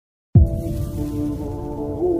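Background music that starts about a third of a second in with a sudden deep hit, then a held low chord whose notes shift slowly.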